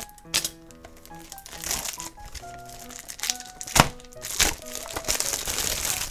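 Plastic shrink-wrap crinkling as it is pulled off a cardboard toy box, with two sharp crackles about four seconds in. Background music plays under it.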